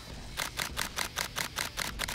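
DSLR camera shutter firing in continuous burst mode, a rapid run of about nine clicks at roughly five a second, starting just under half a second in.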